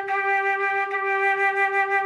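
Metal concert flute playing one long, steady G, the G above middle C, as a note of the descending C major scale.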